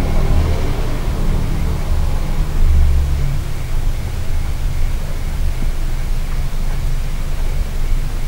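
A steady low rumble with a faint hiss above it: constant background noise, loudest in the first half and easing a little after about three seconds.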